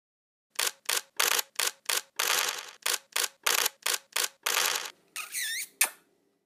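Channel outro sound effect: a rapid, irregular run of about a dozen short snaps, like camera shutters firing, then a brief squeaky whistle that dips and rises in pitch several times, ending in one sharp click.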